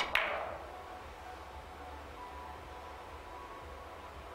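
A three-cushion billiard shot: the sharp click of the cue tip striking the cue ball, then a second click a split second later as the cue ball hits the red ball. A short wash of sound follows and fades within about a second, leaving quiet hall tone.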